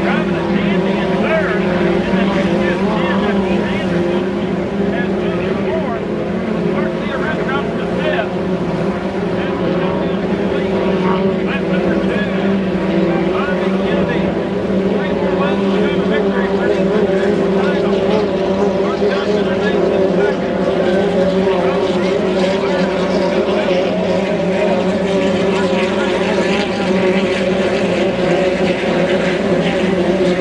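Racing hydroplanes from a 2.5-litre inboard class running flat out on the course, heard as a steady engine drone that holds even throughout, with indistinct voices over it.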